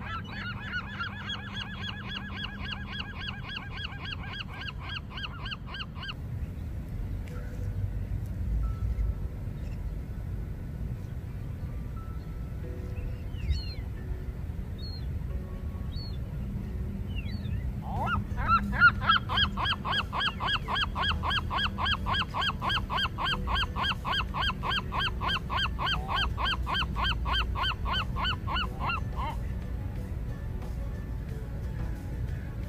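Gulls calling in long fast runs of harsh repeated calls, about four a second, for several seconds at a time, with a quieter stretch of about ten seconds in the middle holding only faint chirps.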